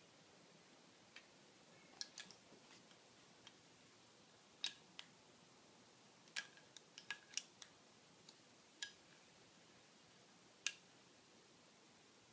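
Plastic toy tools being handled and clicked together: a scattering of short, sharp clicks and taps at irregular intervals.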